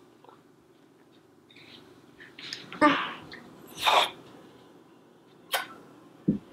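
A toddler making two short, loud vocal sounds about a second apart, followed near the end by a single sharp click.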